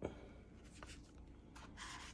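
Faint handling noise: soft rubbing and a few light clicks as hands move a phone and the flash drive's cardboard box and card.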